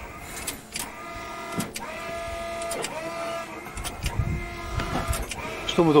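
A tank's electric oil pump motor running with a steady, several-toned whine that dips and recovers about once a second.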